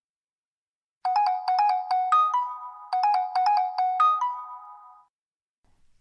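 Phone ringtone signalling an incoming call: a short electronic melody of quick notes that settles into held notes, played twice.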